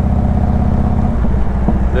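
Harley-Davidson Road King Classic's V-twin engine running under way, heard from the bike itself; its note changes about a second in.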